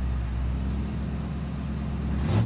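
Car engine idling steadily: a low, even engine note.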